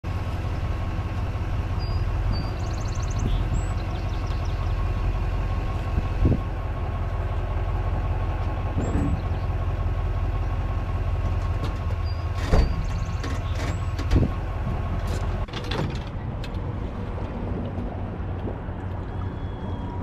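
Vehicle engine idling steadily, with a few sharp knocks a third of the way in and again near the middle, and small bird chirps in the background.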